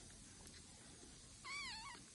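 A kitten about three weeks old, being bottle-fed, gives one short, high mew near the end that wavers up and down in pitch.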